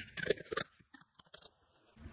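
A quick run of sharp clicks from computer keystrokes and mouse clicks in the first half second, then near silence with a few faint ticks.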